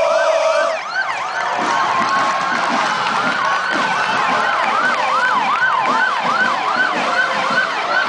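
Several sirens sounding together in a fast yelp, each rising sweep repeating about three times a second, over a steady tone.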